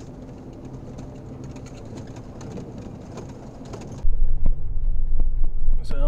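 Pickup truck rolling slowly along a gravel road: tyre and road noise with many small clicks and rattles. About four seconds in, it switches suddenly to a much louder, low in-cab rumble of the truck running over the rough road.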